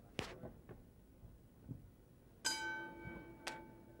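Boxing ring bell struck once about two and a half seconds in, ringing with a clear metallic tone that fades over about a second and a half: the signal that starts round three. Faint arena noise and a couple of sharp clicks are under it.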